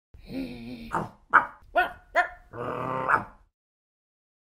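A dog growling, then four short barks in quick succession, then another longer growl.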